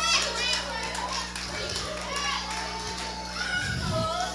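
Scattered voices of a church congregation calling out in short high-pitched responses during a pause in the sermon, over a low steady hum.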